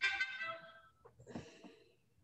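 Short electronic notification chime from a video-call app, a bright tone that starts suddenly and fades out within about a second, sounding as a participant is let into the meeting.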